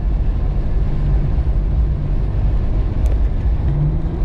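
Steady low rumble of engine and tyre noise inside the cab of a Jeep Cherokee XJ driving on a slushy, snow-covered highway.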